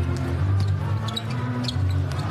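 A basketball bouncing on a hardwood court over music with a heavy, steady bass.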